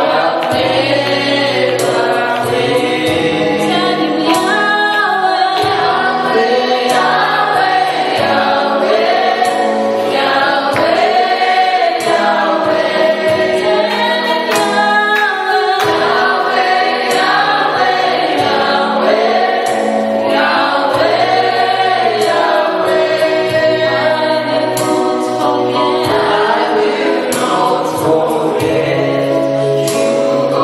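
Gospel worship team of male and female voices singing together in harmony over instrumental accompaniment, steady and continuous.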